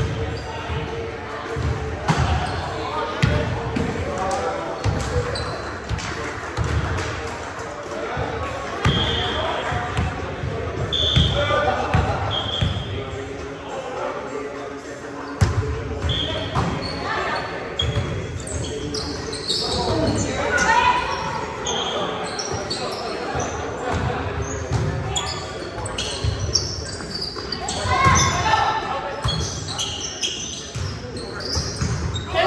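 Indoor volleyball game in an echoing gymnasium: repeated sharp smacks of the ball being hit and bouncing on the hardwood floor, with short high squeaks and players' indistinct shouts and chatter.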